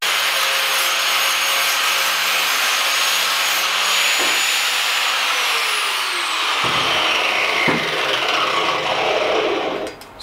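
Electric angle grinder running and cutting sheet stainless steel, starting suddenly; from about halfway its pitch falls steadily as the disc slows.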